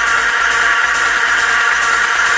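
Techno track in a breakdown: a dense, sustained synth chord with a steady pulsing low bass and no kick drum.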